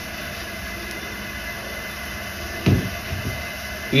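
High-pressure gas wok burner running at full flame, a steady rushing hiss under a wok of water heating close to the boil.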